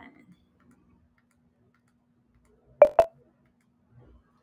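Two sharp clicks about a fifth of a second apart, close to three-quarters of the way through, over a faint steady hum.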